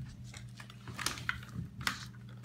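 A few light clicks and taps, with some rustling, of small objects handled on a table.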